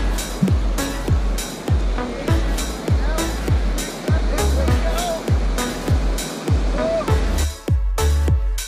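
Background electronic music with a heavy bass kick that drops in pitch on every beat, roughly every 0.6 seconds, and sharp percussion hits over it. Near the end the upper layers cut out briefly, leaving the bass.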